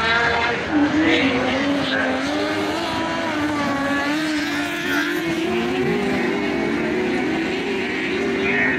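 Several small winged speedway race cars running around a dirt oval, their engines droning together with pitch rising and falling as they lap.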